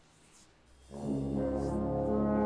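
A military band's brass comes in about a second in with a loud held chord, after a faint hush.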